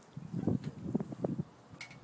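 Soft, irregular thumps and rustling for about a second and a half, then a short lull and a brief sharp rustle near the end.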